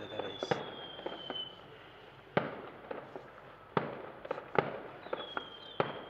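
Fireworks going off: irregular sharp bangs, about seven in six seconds, with a high whistle falling slightly in pitch at the start and again near the end.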